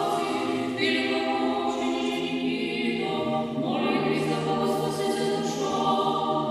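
A small church choir singing Orthodox liturgical chant a cappella, several voices holding long chords that change a few times.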